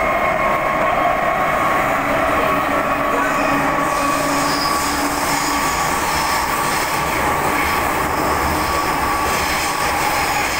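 Inside a moving MTR metro car: the steady rumble of the train running, with a high wheel squeal holding a steady pitch. A second, higher squealing tone joins about a third of the way in.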